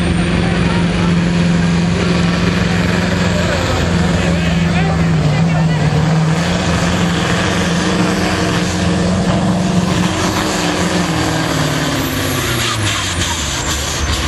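Massey Ferguson 2805 pulling tractor's V8 diesel running at high revs under full load, dragging a weight-transfer sled. A loud steady drone falls in pitch over the last two seconds as the pull ends.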